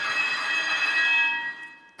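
Several high steady ringing tones sounding together, which fade away about a second and a half in.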